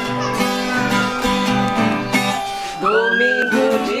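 Música sertaneja played on two acoustic guitars, strummed steadily, with a woman's voice singing. A held sung note trails off early, and a new sung phrase begins near the end.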